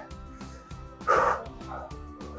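Background music with sustained chords. About a second in, one short forceful voiced exhale is heard, a breath pushed out while the abdominal muscles contract during a crunch.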